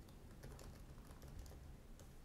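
Faint typing on a computer keyboard: a quick run of soft keystrokes as a short phrase is typed.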